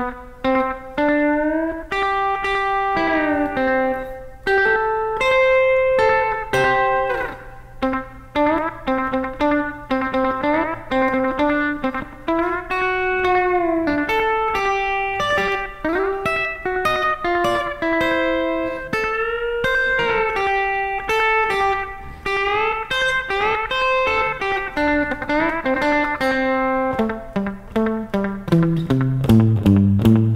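Fender electric guitar played through a slapback delay, picking a rockabilly lead lick slowly, single notes with several string bends. Near the end the playing turns denser, with lower repeated notes.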